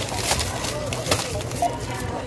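Thin plastic grocery bags rustling and crinkling as a boxed item is pushed into them, a run of irregular crackles.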